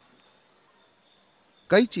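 Near silence in a pause between a man's spoken phrases, with only a faint steady high-pitched tone; his voice comes back near the end.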